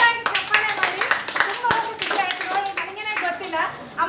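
Hands clapping, a quick run of claps in the first second and a half, alongside women's laughing and talking voices.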